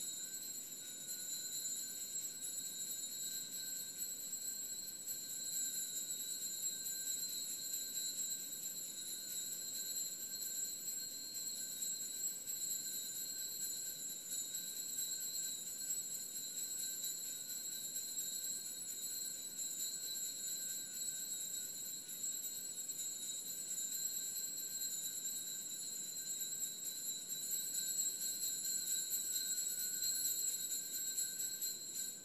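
Steady, high-pitched ringing of several tones held unchanged throughout, without speech.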